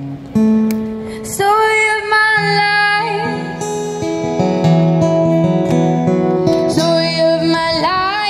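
Steel-string acoustic guitar playing an instrumental passage of a pop ballad: a couple of strummed chords, then from a couple of seconds in a run of picked notes, with a female voice singing at times.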